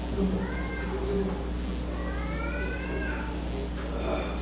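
A young child's high-pitched voice: a short rising squeak, then a longer drawn-out call that rises and falls. A steady low electrical hum runs underneath.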